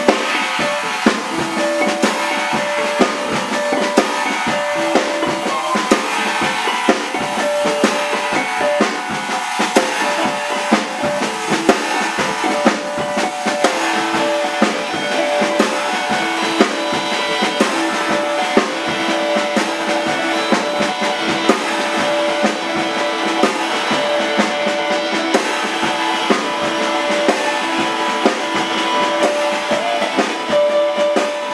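Small-group jazz: an archtop electric guitar picked through an amplifier over a drum kit. The drums keep up a busy stream of hits while pitched notes repeat in the middle range.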